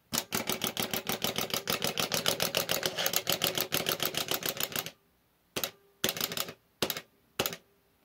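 Plastic wind-up hopping jack-o'-lantern toy running, its clockwork clicking and its feet rattling on the tabletop about ten times a second for about five seconds before stopping abruptly. A few single clicks follow near the end.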